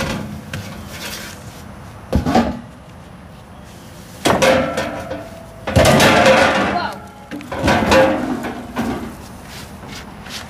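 A knock about two seconds in, then three bouts of clattering and scraping as pipe and debris are handled and thrown down on a truck bed.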